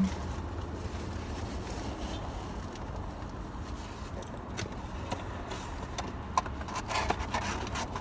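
Steady low rumble inside a parked car's cabin, with a few faint clicks and rustles in the second half.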